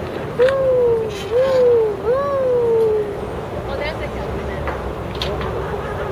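An outdoor park exercise machine's metal pivots squeaking three times in a row as it is worked stroke by stroke, each squeak sliding up and then slowly down in pitch over about a second. The squeaks stop about three seconds in.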